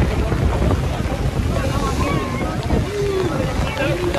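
Storm wind buffeting the microphone as a steady low rumble, over the rush of a wind-whipped, choppy sea around a sailing boat's bow.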